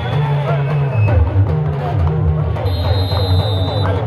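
Drum music with voices over it, the kind of traditional Hausa drumming that accompanies dambe boxing.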